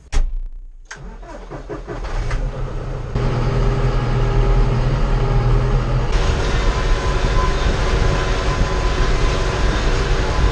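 John Deere 5085M tractor's diesel engine starting, heard from inside the cab. It builds up over the first few seconds and steps up to a steady, louder run about three seconds in as the tractor pulls away, with more rushing noise added about six seconds in.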